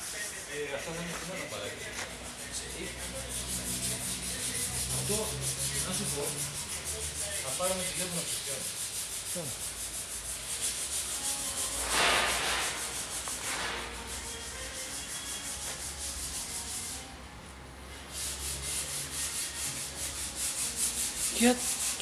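Power sander running on car bodywork, a steady rasping hiss that swells about halfway through and dips briefly about three-quarters of the way in.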